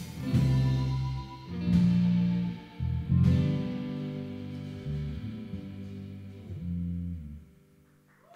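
Live band's electric guitar and electric bass strike three loud sustained chords, about a second and a half apart. The last chord rings out and fades away near the end, as the song closes.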